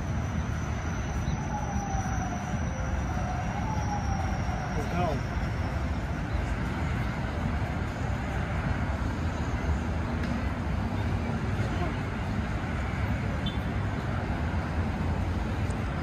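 Steady low rumble of road traffic from a nearby highway.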